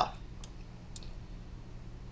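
Two faint computer mouse clicks, about half a second and a second in, over a low steady hum.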